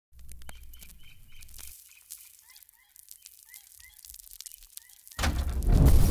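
Birds chirping: short calls about four a second at first, then sparser, over a low hum that stops after about two seconds. About five seconds in, a loud low crash breaks in and music starts.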